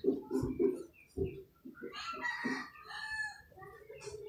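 A few light clicks of thin wire being twisted onto a bolt terminal. About two seconds in comes a faint, drawn-out bird call lasting about a second and a half.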